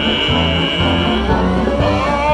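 A wind band playing the accompaniment between two sung lines of a song, with a high held note in the first second and a walking bass line underneath.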